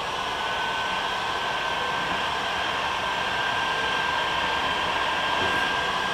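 Electric heat gun running steadily, its fan blowing hot air with a thin steady whine, aimed at a car's rear fender lip to soften it for rolling.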